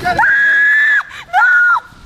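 A woman's high-pitched scream held for nearly a second, then a second, shorter and slightly lower squeal.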